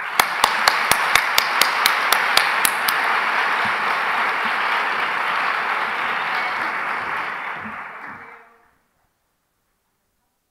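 Audience applauding, with one person's claps close to the microphone standing out sharp and regular, about five a second, for the first few seconds. The applause fades out about eight seconds in.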